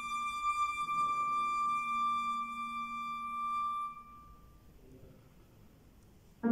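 Concert flute holding one long high note over a soft, low sustained piano note; about four seconds in, both fade away into a short, almost quiet pause filled only by the hall's reverberation.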